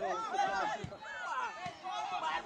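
Several voices shouting and chattering over one another: players and onlookers calling out during play.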